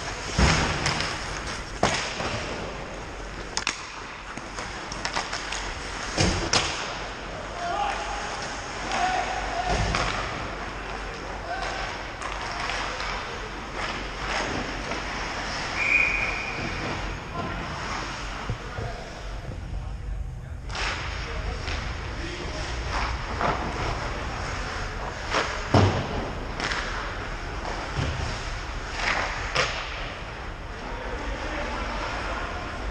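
Ice hockey play in an indoor rink: repeated sharp knocks and thuds of sticks, puck and boards over the hiss of skates on ice, with players shouting now and then. The loudest knocks come about a second in and near the end.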